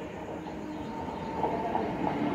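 Mumbai suburban electric local train (EMU) pulling into the platform, its running noise growing steadily louder as it approaches.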